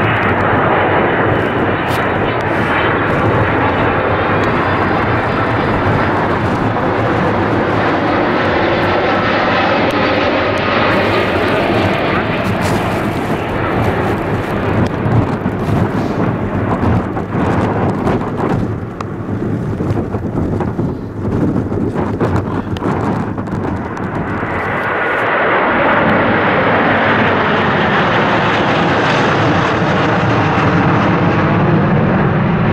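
Jet engines of a Boeing 767 on final approach passing close, with engine tones sliding down in pitch, the noise dipping and growing uneven around the middle as it flares to land. Near the end the engines of a low Airbus A330 swell in, louder and higher.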